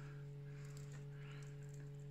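Faint soft rustling and small ticks of a crochet hook working cotton yarn, over a steady low hum.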